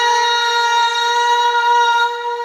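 A man's voice through a PA system, holding one long, steady high note in unaccompanied devotional naat recitation, following a gliding ornamented phrase.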